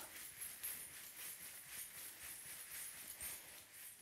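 Metal coins on a belly-dance hip scarf jingling faintly in a quick, even rhythm as the hips shake in a shimmy.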